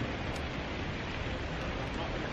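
Steady outdoor background noise: an even hiss with a low rumble underneath.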